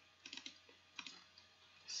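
Faint clicking at a computer: a quick cluster of clicks about a quarter-second in, then a single click about a second in.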